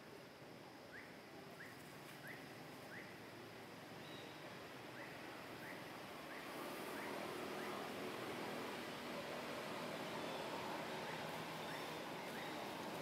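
Quiet outdoor ambience with short, high, rising chirps repeating in runs of three or four, about two a second; the steady background noise grows louder about halfway through.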